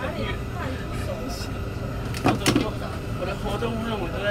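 Tour bus driving through city traffic: a steady low engine and road rumble, with two sharp knocks a quarter-second apart about halfway through.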